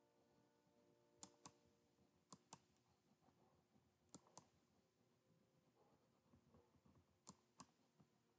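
Faint computer mouse clicks: four quick press-and-release pairs spread through otherwise near-silent room tone.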